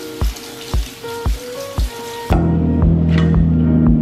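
Kitchen tap water running onto lettuce in a metal colander, over background music with a steady beat. The water stops a little over halfway through, and the music grows louder with a heavy bass line.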